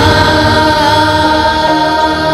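Children's vocal group singing a long held note in unison over a musical backing.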